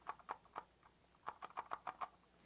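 A puppet's wordless reply: a quick, irregular string of short clicks and chatters in two bursts, one near the start and a longer one in the second half.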